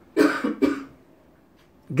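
A person coughing: two short coughs in quick succession, under a second in all.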